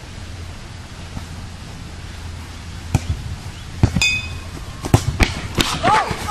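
Steady outdoor background noise, then from about three seconds in a run of six or so sharp knocks and clacks, one with a brief ringing tone, as bats strike the ball in play.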